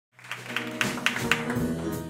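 A live band begins its instrumental intro almost at once: acoustic guitar over bass and piano, with sharp strokes about four times a second.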